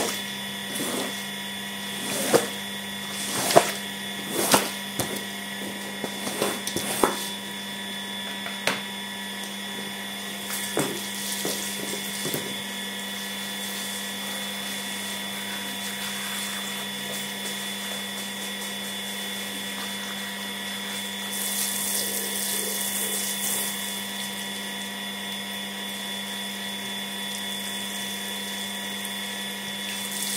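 A steady motor hum with a high whine runs throughout. Over it come a series of sharp knocks and slaps in the first dozen seconds as a squeegee is worked over a wet rug on tile. About two-thirds of the way in there is a short hiss of water.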